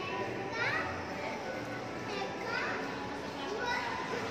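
Children's high-pitched voices calling out over a murmur of background chatter, with three short squealing calls: one about half a second in, one around two and a half seconds, one near the end.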